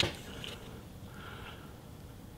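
Quiet room tone with a short click right at the start, followed by a few faint rustles.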